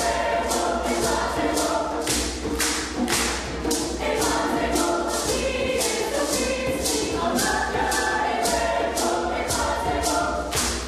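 Mixed choir singing in harmony, over a steady beat of sharp percussive hits about three a second.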